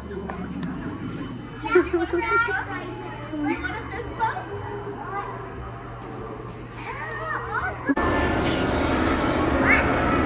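Young children talking and squealing in high voices over a steady low hum; the sound changes abruptly near the end.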